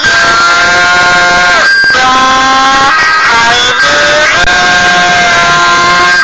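A song: a voice-changer-processed vocal sings long held notes that slide from one to the next, over a guitar backing.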